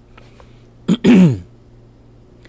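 A man's single short cough about a second in: a sharp catch, then a brief rasp falling in pitch, lasting about half a second.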